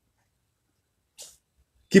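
A pause in a man's speech, silent apart from one short, soft hiss of breath about a second in, a quick intake of air before he speaks again. His voice returns at the very end.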